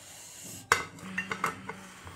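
A plate set down on a stone kitchen counter: one sharp knock about two-thirds of a second in, then a few lighter clinks of crockery.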